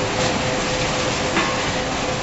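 Automated packing line running: a steady mechanical din from the conveyor and delta pick-and-place robot, with a constant hum and a couple of faint clicks.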